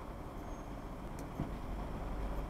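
Low steady rumble of a car idling or creeping, heard from inside its cabin, with a faint click and a short soft thump about a second and a half in.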